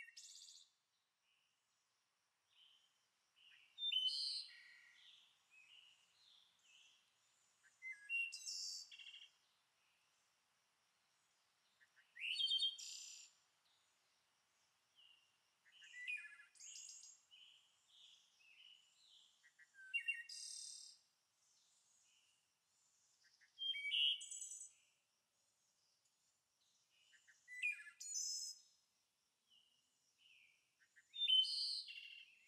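A bird singing short, high-pitched phrases of quick gliding notes, one phrase about every four seconds.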